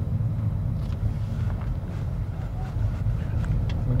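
Steady low rumble of engine and tyre noise inside a Honda Civic's cabin while it drives along a highway at a constant pace.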